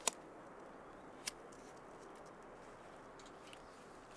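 A sharp click right at the start and a softer one about a second later, then a few faint ticks, over a low steady hiss, as the paper in a charcoal chimney starter is lit.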